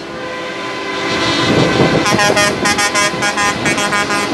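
A heavy truck driving past, its engine and tyres growing louder, then from about halfway a vehicle horn sounding in quick repeated short toots, several a second.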